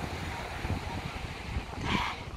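Strong wind buffeting the microphone, a fluttering rumble over a steady rush of noise, swelling briefly near the end.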